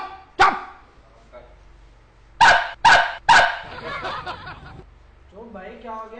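A dog barking: one short bark just after the start, then three quick barks about two and a half seconds in.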